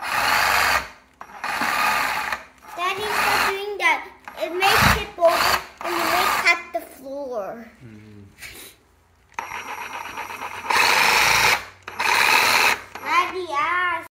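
Ryobi 18V ONE+ cordless reciprocating saw triggered in a series of short bursts, each about a second long, running free with its blade in the air and not cutting anything.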